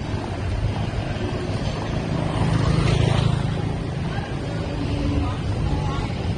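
Street ambience dominated by a low motor rumble that swells to its loudest about three seconds in, typical of a motorbike riding past.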